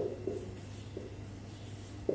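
Marker pen writing on a whiteboard: a sharp tap at the very start, then a few faint short strokes, over a steady low hum.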